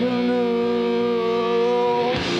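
Live rock band with cello holding one sustained chord, the notes ringing out steadily with a slight waver and no drum beats.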